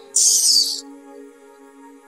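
Soft background film music with long held notes, cut across by a short, loud hissing rush just after the start that lasts about half a second.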